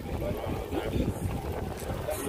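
Wind buffeting the microphone, a low rumble, with faint voices of people walking in a group.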